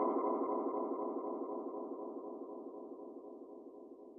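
Final held synth note of a dubstep track, pulsing evenly several times a second and fading steadily away.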